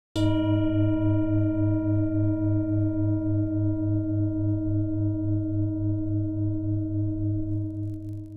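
A single struck bell tone sounding suddenly just after the start, ringing on with a slow, even pulsing waver of about four beats a second and fading only slowly.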